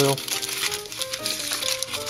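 Aluminium tin foil crinkling and crackling as it is handled and pressed around a cleat on the sole of a cycling shoe. A soft melody plays underneath.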